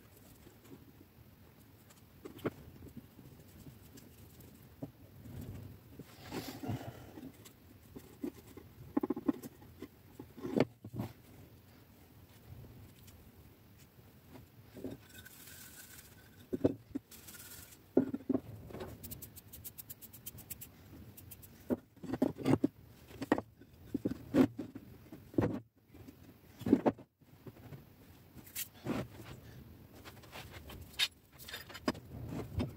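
Hardwood boards being glued up on a workbench: soft rubbing and scraping as glue is spread over the strips, with irregular knocks and clicks as the pieces are handled and set down against one another.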